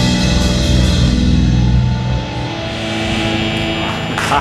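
Live blues band (electric guitar, bass guitar, drum kit and keyboard) playing the closing bars of a song; about halfway through the full band stops and the last chord is left ringing and fading out.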